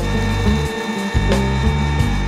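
Panasonic MX-AC400 mixer grinder's motor running on the pulse setting, grinding whole coffee beans in its stainless steel mill jar, with a steady high whine, under background music.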